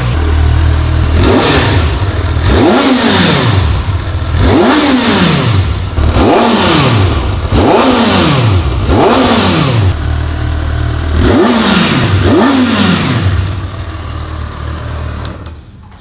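2024 Kawasaki Ninja ZX-6R's 636 cc inline-four, through its stock silencer, blipped from idle about seven times in quick succession, each rev rising and falling straight back. It then settles to a steady idle near the end.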